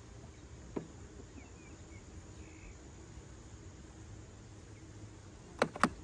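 Honey bees buzzing faintly and steadily around the hive. There is a light click about a second in and two sharp clicks near the end.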